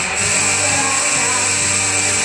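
A live rock band playing loud amplified music, with electric guitar and drum kit, steady with no break.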